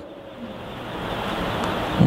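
A steady rushing noise with no speech, growing gradually louder through the pause.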